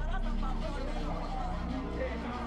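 Background voices talking over a steady low hum.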